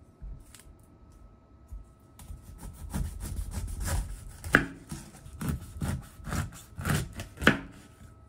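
Kitchen knife cutting through a whole pineapple on a wooden cutting board. After a quiet start, the knife works through the fruit from about two seconds in, then several sharp knocks follow as the blade hits the board, the loudest about halfway through and near the end.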